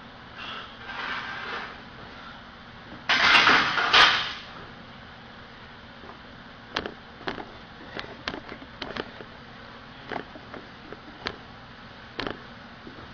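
A loaded barbell set back into a steel power rack: a loud metal clatter with rattling plates lasting about a second. Several light clicks and knocks follow.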